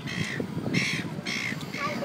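A bird calling four times in quick succession, each call short and harsh, over people's voices.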